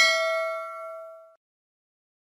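Bell-ding sound effect for a notification bell, a bright metallic ring with several tones that fades away and stops about a second and a half in.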